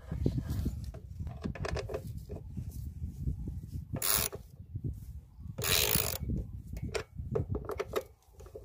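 Hand tool working on the throttle linkage of a Predator 301cc go-kart engine: small metallic clicks and rubbing over a low rumble, with two short, louder harsh bursts about four and six seconds in.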